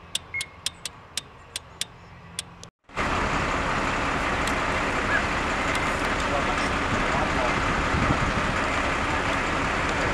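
A string of about seven sharp cracks over a quiet background. After a cut about three seconds in, a loud, steady rumble of a fire engine running close by fills the rest.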